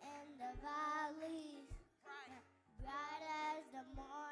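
Young children singing into microphones over music with a low beat about once a second; the singing comes in two phrases with a short break about two seconds in.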